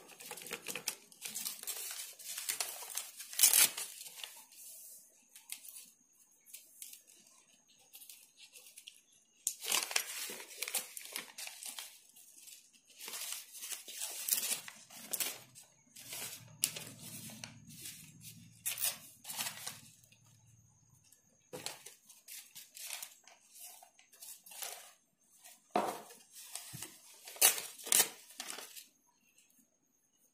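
Paper crinkling and rustling in irregular short bursts as torn scraps of paper are handled and pressed down onto a glued sheet.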